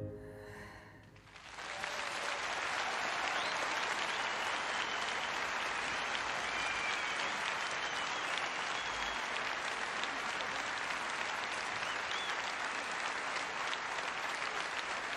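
A soprano's held final note dies away at the very start. About a second and a half in, a concert audience breaks into steady applause that carries on, with a few short high whistles in it.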